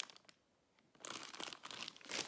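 Plastic sweet packet (Cadbury Mini Snowballs bag) crinkling as it is handled and set down, with a short silent gap after a first crackle, then about a second of steady crinkling.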